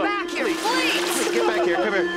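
Eerie film soundtrack: a steady low drone with many short wavering, voice-like cries layered over it.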